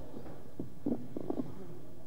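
Handling noise from a table microphone on a gooseneck stand being moved by hand: a few soft, low thumps and rubs in the second half, as it is pulled across the table to the next speaker.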